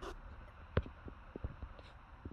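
A few faint clicks and light knocks from handling the camera and the car's interior plastic trim, the sharpest a bit under a second in.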